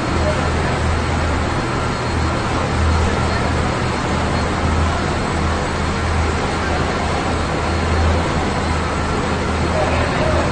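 Steady low rumble filling an underground car park, with indistinct chatter from a crowd of people.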